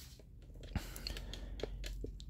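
A few faint, short clicks and light rustles from a marker and paper being handled, over a low steady hum.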